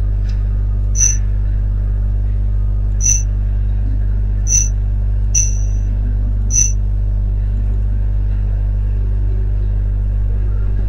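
Computer mouse button clicked five times at uneven intervals, spread over the first seven seconds, as menu folders are opened. Under the clicks runs a steady low electrical hum.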